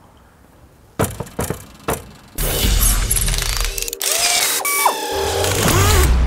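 Title-sequence music built from mechanical sound effects: a few sharp clicks about a second in, then from about two and a half seconds a loud, dense stretch of machine-like noise over a deep bass.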